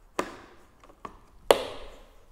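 Two sharp wooden knocks, the second the louder, with a faint click between them: wood and board pieces being knocked against the drill-press table and its fence.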